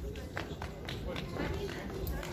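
Footsteps of dancers running onto the stage: a string of sharp taps about every half second, over a low murmur from the audience.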